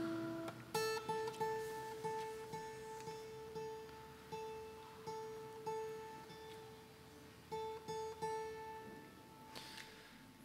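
Acoustic guitar playing a quiet picked intro: a lower note, then from about a second in a single high note plucked again and again, slowly fading and dying away near the end.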